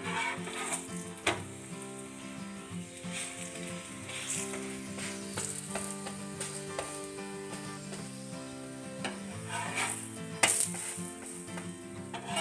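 A cauliflower paratha frying on a flat pan, sizzling in bursts as a slotted metal spatula presses and turns it. The spatula knocks sharply against the pan about a second in and again near the end. Soft background music with held notes runs underneath.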